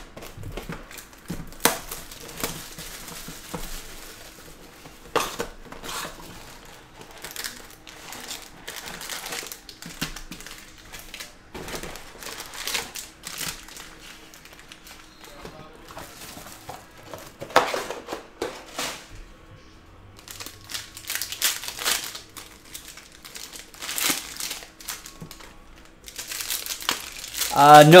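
Crinkling and tearing of the plastic shrink-wrap on a sealed trading-card hobby box as it is ripped open, then foil card packs rustling as they are handled, in irregular bursts.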